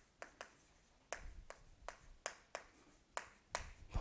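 Chalk striking a blackboard while a word is written: about a dozen faint, sharp clicks at an uneven pace.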